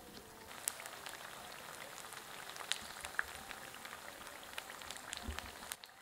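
Rice-and-tapioca fritters frying in hot oil in a pan: a faint, steady sizzle with scattered small pops and crackles.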